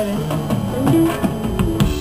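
Live pop music between sung lines: guitar and drums playing over a bass line.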